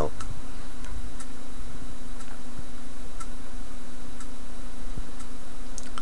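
Computer keyboard being typed on: a few faint, irregular key clicks over a steady low electrical hum.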